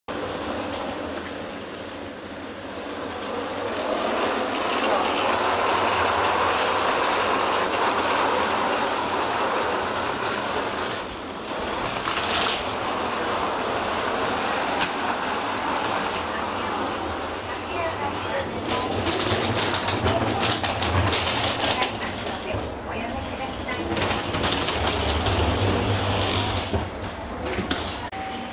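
Railway station platform ambience: the steady running noise of a train nearby, with voices in the background and a few brief clatters.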